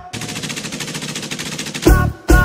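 Machine-gun fire sound effect in a break of a pop song: a rapid, even rattle of shots for nearly two seconds, with the music's beat coming back in near the end.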